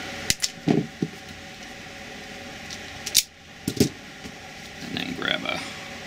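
Small hand tools and wire handled on a bench mat: a few light clicks and knocks, with one sharp snip a little after three seconds in as a wire is cut with small diagonal cutters.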